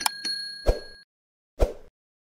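Outro logo sound effects: a bright chime dings at the start and rings for about a second. Short thumps come at about two-thirds of a second and again near the end.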